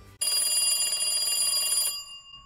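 A telephone ringing: one continuous ring that starts suddenly just after the start and cuts off near the end, an edited-in sound effect for a banana held up as a phone.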